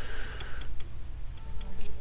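A few light ticks and clicks over faint background music and a low steady hum; a held tone sounds for the first half-second or so.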